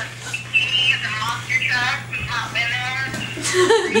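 A song with a wavering singing voice playing through a phone's small speaker, thin with little bass, after a short laugh at the start.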